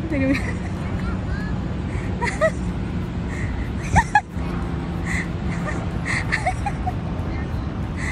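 Outdoor ambience: a steady low rumble with distant voices of passers-by and scattered short high calls, and a single sharp knock about four seconds in.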